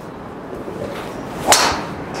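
Callaway Paradym Ai Smoke MAX D driver striking a golf ball off a range mat: a single sharp crack about one and a half seconds in.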